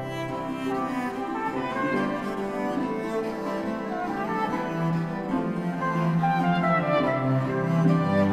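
Baroque chaconne in C major for four instrumental parts, played by an early-music ensemble: held string lines over a repeating bass. The lowest bass notes are absent at first and come back about five seconds in.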